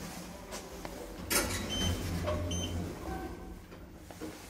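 Schindler 3300 elevator machinery: a sharp clatter about a second in, then a low hum for about a second and a half, with two short high electronic beeps from the car's keypad during the hum.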